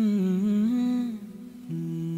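Male vocal humming a wordless, wavering melody over soft backing music in a Vietnamese pop ballad. A lower held note with vibrato comes in near the end.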